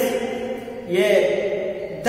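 Only speech: a man's voice reading aloud in Hindi, the words drawn out in long held tones.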